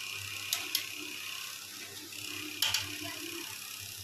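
Nimki deep-frying in hot oil in a kadhai, a steady sizzle. A few sharp metal clicks of the wire skimmer against the pan come about half a second in, again just after, and once near the middle.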